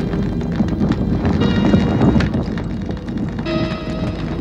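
Dramatic soundtrack sound effect: a dense rattle of rapid clattering clicks, loudest around the middle, with bell-like ringing tones and music over it.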